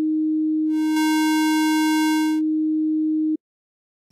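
Harmor software synthesizer holding one steady note as a pure sine tone. About a second in, the timbre mix is turned toward the square wave and the tone turns buzzy with a stack of upper harmonics. It goes back to a pure sine before the note stops shortly before the end.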